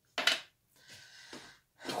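Wooden draughts pieces set down on a wooden board: a short, sharp knock or two a fraction of a second in.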